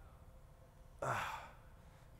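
A man's audible sigh, a short breathy 'uh' into the microphone about a second in, after a second of quiet room tone.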